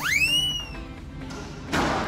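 Background music with a whistle-like sound effect that swoops up in pitch and then sags back over the first second, then a single sharp hit near the end as a squash racket strikes the ball.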